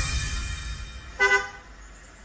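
A short car horn toot about a second in, heard on a film trailer's soundtrack after a low tone fades out.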